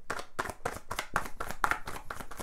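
Tarot deck being shuffled by hand: the cards slap together in a quick, even run of soft clicks, about seven or eight a second.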